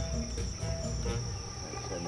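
Insects chirping in one steady high-pitched trill, over a low rumble.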